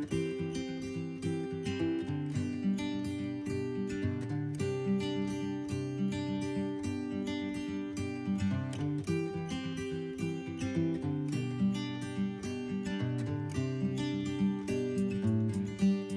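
Background music played on a plucked acoustic guitar, moving from note to note at an even pace.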